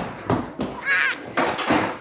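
A skateboard knocking and rolling on a wooden mini ramp: three sharp knocks about two-thirds of a second apart, with a brief shout around the middle.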